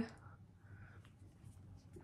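Quiet room with faint rustling from hair and hands being handled and one light click about a second in.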